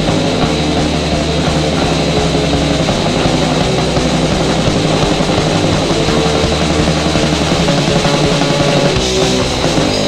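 Crust punk band playing an instrumental stretch on electric guitar, bass and drum kit, with no vocals.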